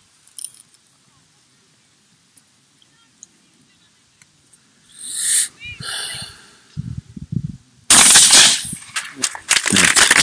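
One loud shotgun shot firing a single slug, about eight seconds in.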